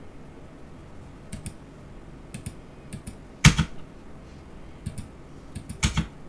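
Scattered clicks at a computer keyboard and mouse, several in quick pairs, with one louder click about three and a half seconds in and a quick cluster near the end.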